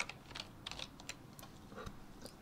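Faint, scattered clicks of computer keyboard keys being pressed.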